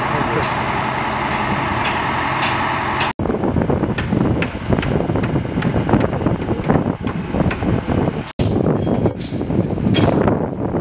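Construction-site machinery: a mobile crane's engine runs steadily for about three seconds. Then come short, sharp metallic clinks and knocks of steel reinforcing bar being handled over a continuous rumble of machinery. The sound cuts off briefly twice.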